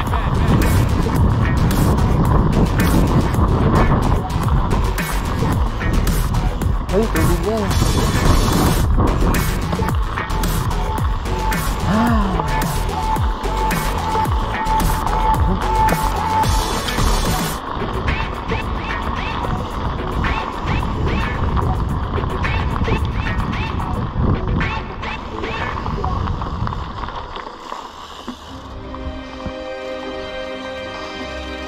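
Mountain bike ridden fast down a gravel path: wind rushes over the camera microphone and the knobby tyres rattle and crunch on loose gravel, with short indistinct voices in the noise. Music comes in near the end as the noise drops away.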